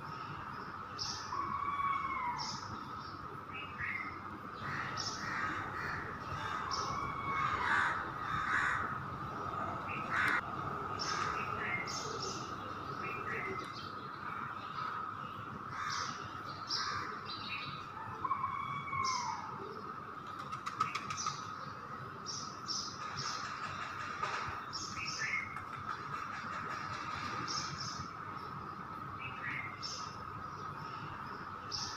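Birds calling and chirping, many short calls scattered throughout, over a steady high-pitched tone.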